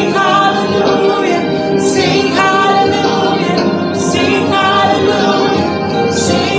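A woman singing a gospel worship song, holding drawn-out notes.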